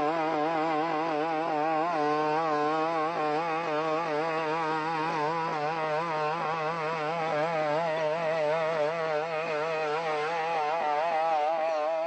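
Boston Dynamics BigDog robot's engine, a two-stroke go-kart engine driving its hydraulic pump, running as a continuous buzz while the robot walks. Its pitch wavers up and down about twice a second.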